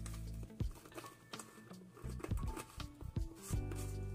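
Background music with held notes that change pitch, and a few soft taps.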